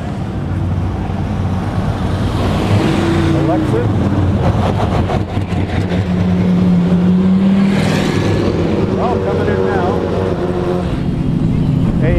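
Race car engines running at low revs as GT race cars roll slowly past along pit lane, loudest as a car draws close a little past the middle.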